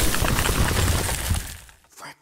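Shattering-glass sound effect: the tail of a loud crash, with shards tinkling and dying away about a second and a half in.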